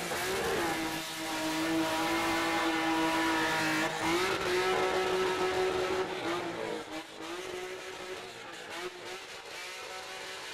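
Drifting car held at high revs: a sustained, steady high engine note with brief dips, mixed with the hiss and squeal of spinning tyres, growing fainter over the last few seconds as the car moves off.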